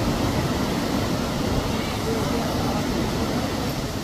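Steady rushing of river water over rocks and rapids.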